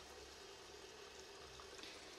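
Faint, steady hiss of tap water running from a faucet into a sink.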